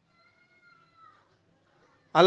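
Near silence, with one faint high-pitched call about a second long that rises slightly and then falls in pitch.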